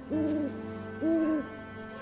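An owl hooting twice, two even hoots about a second apart, each under half a second long, over a faint steady background drone.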